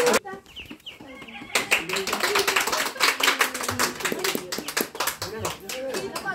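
A small group of people clapping, mixed with voices and laughter. The clapping starts about a second and a half in.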